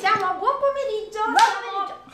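A high voice calling out without clear words, with hand claps, the sharpest of them about one and a half seconds in.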